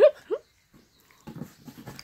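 A dog giving two short high whines at the very start, the second rising in pitch, followed by faint voices.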